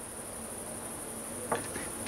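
Crickets chirping steadily with a high, even trill, with a light tap about one and a half seconds in.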